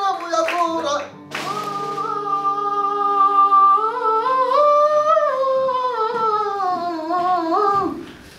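A solo singer holds one long, slow sung phrase that slides up and down in pitch, over a low held accompanying note. The phrase ends just before the close.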